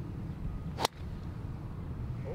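A golf driver's clubhead striking the ball off the tee: a single sharp crack about a second in.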